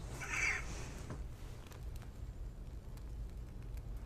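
Quiet room tone with a steady low hum, and a short soft hiss in the first second.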